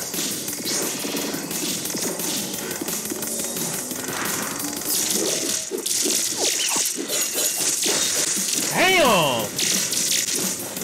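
Fight-animation sound effects: a rapid string of hits, smashes and whooshes over music, with a falling, pitched effect about nine seconds in.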